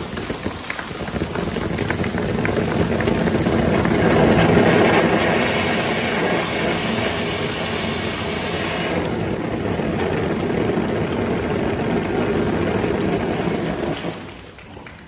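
A pair of cold-spark fountain machines running, a loud, steady crackling rush that drops away sharply near the end.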